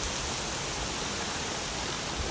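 Steady rushing and splashing of a small waterfall running down a rock face into a shallow pool.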